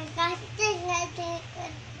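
A toddler singing a short phrase of held, sliding notes in a high voice, trailing off shortly before the end.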